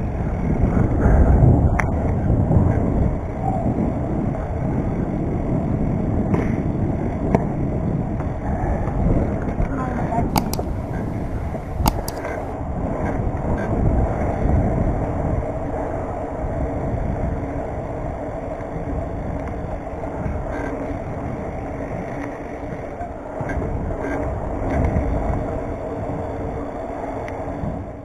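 Wind blowing on the microphone of a camera riding on a BMX bike, over the steady rolling noise of its tyres on asphalt. There are occasional knocks and rattles from the bike, and a brief hiss a little before halfway.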